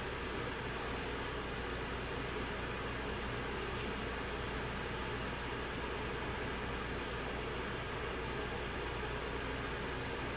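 Steady background hiss with a faint low hum, unchanging throughout; no distinct handling sounds stand out.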